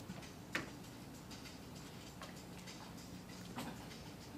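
A few faint, sharp clicks over a low steady hum, the strongest about half a second in and others around the middle and near the end.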